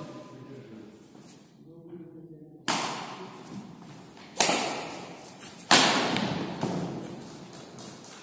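Badminton racquet hitting a shuttlecock in a rally: three sharp cracks about a second and a half apart, each ringing out in the hall's echo.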